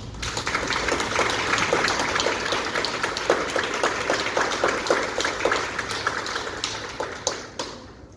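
Audience applauding, the clapping dying away near the end.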